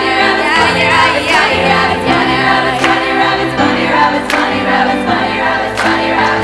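A group of singers singing together in held, shifting chords over a low bass line, with a sharp beat about every second and a half.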